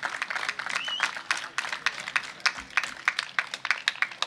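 Scattered applause from a small outdoor crowd: many irregular hand claps, with a short high rising call about a second in.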